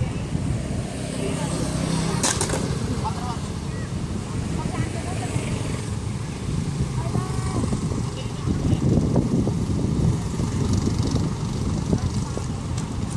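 A car driving slowly past close by, its engine and tyres making a steady low rumble, with faint voices in the background. A sharp click comes about two seconds in.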